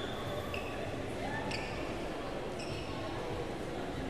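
Several short, high-pitched squeaks of badminton players' shoes on the synthetic court surface as they move during a rally, over a steady murmur of the hall crowd.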